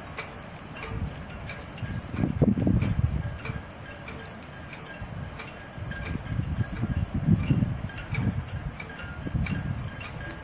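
Wind on the microphone: a low rumble rising and falling in gusts, strongest about two seconds in and again from about six to eight seconds, with faint small ticks at an even pace above it.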